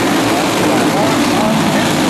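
A pack of racing karts' small engines running together at speed, a steady multi-engine drone.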